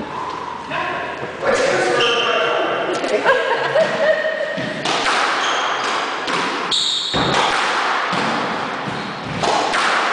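Squash rally: the ball is struck by rackets and hits the court walls in a series of sharp knocks, most of them from about five seconds in. Shoes squeak on the wooden floor between the hits.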